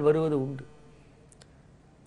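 A man's voice trails off about half a second in, then a quiet pause broken by two or three short, faint clicks a little past the middle.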